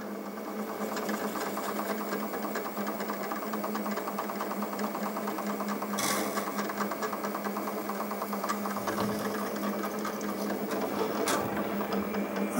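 Milling machine running as its end mill drills through a plate: a steady motor hum with the grinding of the cut. A brief louder burst of cutting noise comes about halfway through, and a sharp click near the end.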